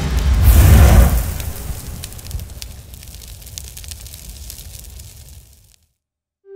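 Cinematic intro sound effect: a deep swell that peaks about a second in, then fades over several seconds into a fine crackling sparkle, cutting off just before the end.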